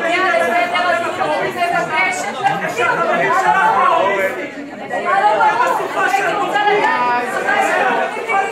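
Several people talking over one another in a large hall, a continuous babble of overlapping voices with no single clear speaker.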